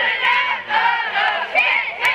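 Cheerleaders shouting a cheer together, many high voices overlapping.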